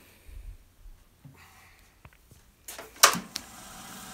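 Faint and quiet at first, then about three seconds in a single sharp click, followed by the steady hum of a wood lathe spinning a segmented bowl blank.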